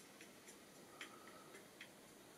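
Near silence with a few faint, sharp clicks, the strongest about a second in.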